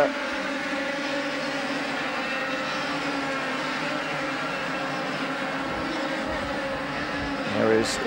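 A pack of 100cc two-stroke racing kart engines at full throttle on track, several engines buzzing together in a steady, high-pitched drone.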